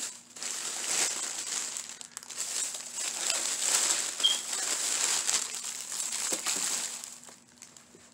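Plastic shopping bag crinkling and rustling as hands dig through it, with many small crackles; it dies away near the end.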